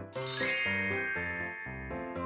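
A bright, sparkly chime sound effect that sweeps quickly upward just after the start, then rings and fades over about a second and a half, over simple children's background music with a plodding note pattern.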